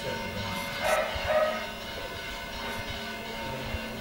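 Two short, loud sounds close together about a second in, over faint background music and a steady low hum.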